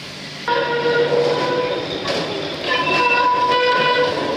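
A vintage electric tram's wheels squealing against the rails in two long, steady, high-pitched stretches. The first starts suddenly about half a second in; the second starts near three seconds in.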